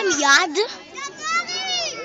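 Children's voices shouting and calling out, with a loud shout at the start and a long, high-pitched call about a second in.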